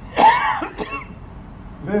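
A man clearing his throat close to a microphone: one loud rasp shortly after the start, then a shorter second one.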